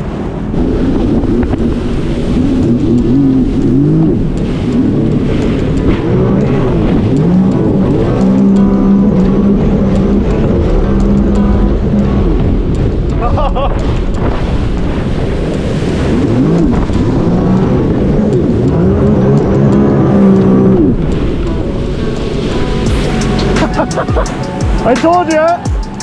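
Sea-Doo RXT-X 300 personal watercraft's supercharged three-cylinder engine running at speed, its pitch repeatedly rising and falling as the throttle and load change, with music playing over it.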